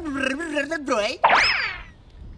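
A man speaking Thai, then a little over a second in a short comic boing-like sound effect whose pitch sweeps up and falls away.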